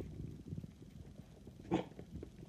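Young miniature dachshund puppies snuffling and shifting in a pile, with one short, sharp puppy sound near the end.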